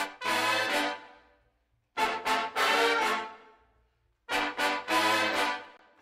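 A recorded horn section plays three short phrases, each fading away in a reverb tail. The room reverb send has been turned up so high that the reverb is too loud.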